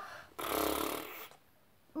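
A woman mimicking a nose blow with her mouth: one forced, noisy blow starting about half a second in and lasting about a second.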